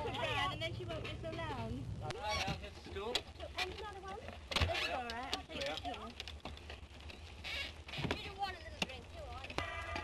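Indistinct voices chattering on an old optical film soundtrack, with a steady low hum and scattered clicks and crackles. The hum drops in pitch about two seconds in.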